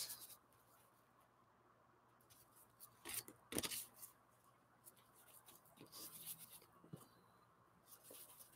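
Mostly near silence, with a few soft taps and rustles of paper collage pieces being handled and laid onto a journal page; two slightly louder ones come about three seconds in.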